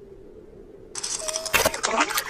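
Cartoon sound effects of a kitten scrambling and tumbling on ice. A sudden burst of scratching and clattering starts about a second in, with a sharp knock soon after.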